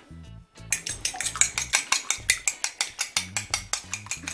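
A metal fork beating a raw egg in a glass bowl: rapid, regular clinks of the fork against the glass, about six a second, starting under a second in.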